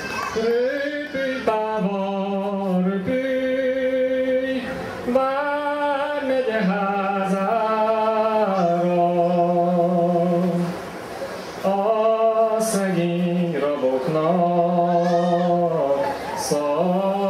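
A man singing a Hungarian folk song solo, unaccompanied, in long held notes that he slides into. There is a short pause for breath about eleven seconds in.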